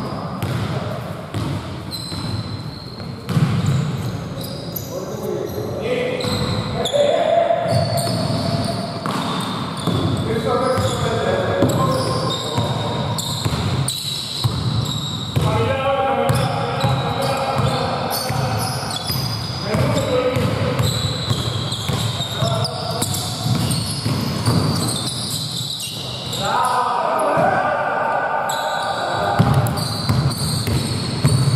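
A basketball bouncing on a hardwood gym floor as it is dribbled in play, with players' voices calling out, all echoing in a large hall.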